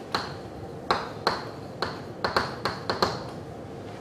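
Chalk tapping and scraping on a blackboard as words are written: about eight short, sharp, uneven clicks, some with a brief high ring.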